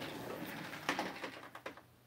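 A background radio receiver's hissy audio fading away as its volume is turned down, with a few clicks and knocks from handling the set along the way.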